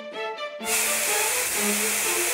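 Aerosol spray can hissing steadily, starting suddenly about two-thirds of a second in, over light background music.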